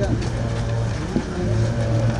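A crowd of people jostling and calling out "Pak Jokowi", over a steady low hum.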